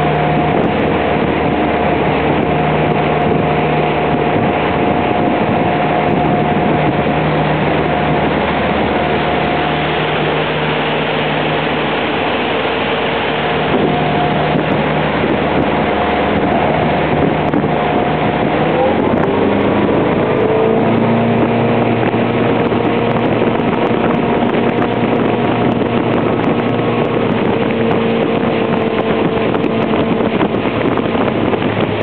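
A small boat's motor runs steadily, with wind buffeting the microphone. About two-thirds of the way through, the engine note rises as the throttle opens, then holds at the higher pitch.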